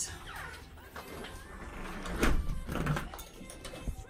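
A house door being moved by hand, with two thuds about two and three seconds in. Soft background music plays under it.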